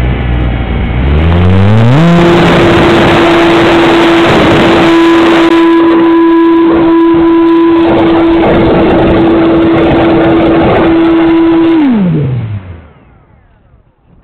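Brushless electric motor and propeller of an E-flite Pitts S-1S 850 mm RC plane on a 4S battery, heard from a camera on the plane. The pitch climbs over about two seconds to a steady high note held at full throttle through takeoff, with heavy wind rush. Near the end the throttle is cut and the note falls away to a faint hush.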